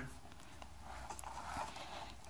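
Faint handling noise: hands gripping and shifting a portable speaker's plastic cabinet, with a few soft ticks, over quiet room tone.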